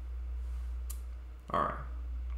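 Steady low hum with a single short click about a second in; a man's voice comes in near the end.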